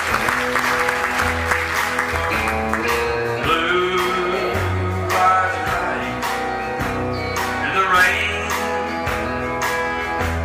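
Live country band playing a slow instrumental intro on guitars and bass, with a lead line that slides between notes.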